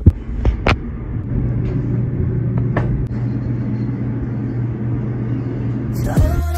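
Steady low rumble of an elevator car running, with two sharp clicks in the first three seconds.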